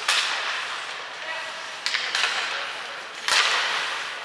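Ice hockey play: several sharp clacks of sticks and puck, with a louder bang a little past three seconds in, each echoing briefly around the rink.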